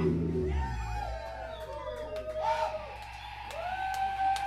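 A live rock band's song ends about half a second in, and a low bass note rings on after the final chord. Over it the crowd cheers, with several rising and falling whoops.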